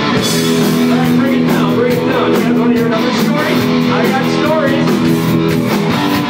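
Live rock band playing loud: electric guitar and drums, with a singer's voice over them.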